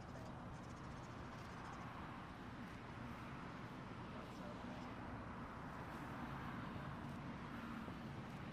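Faint, steady outdoor background noise: a low rumble with indistinct voices in the distance.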